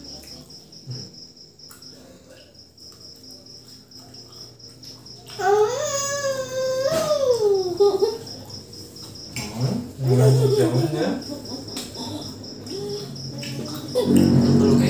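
Crickets chirp steadily in a pulsing rhythm throughout. About five seconds in, a young girl's voice sounds a long, drawn-out note for about two and a half seconds, high-pitched and rising and falling. Around ten seconds in, a man's voice is heard briefly.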